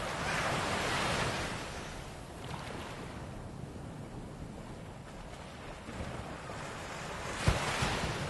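Ocean waves washing and surging in swells, strongest at first and ebbing in the middle, then rising again, with a sudden thump near the end.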